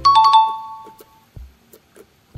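A two-note ding-dong chime, a higher note then a lower one, ringing out and fading over about a second.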